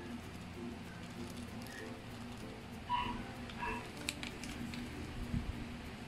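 Light rustling and tapping of a paper-and-plastic bag as powder is shaken out of it over a succulent's roots. A few short, high chirps sound over it, the loudest about three seconds in.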